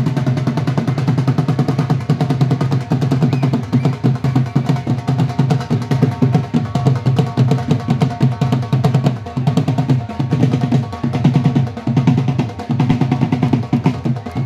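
Dhol drums beaten with sticks in a fast, continuous rhythm.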